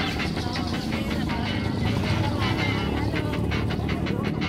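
Busy street traffic, with motorcycle and small van engines running close by and crowd voices, under background music.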